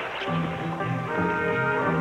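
Film score music with sustained held notes over a pulsing low line.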